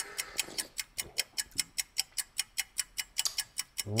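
Quiz countdown timer sound effect: a steady, fast ticking of about five ticks a second while the answer clock runs down.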